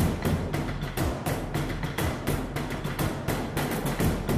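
Dramatic background music score driven by rapid percussion hits, several strikes a second, over a low sustained drone.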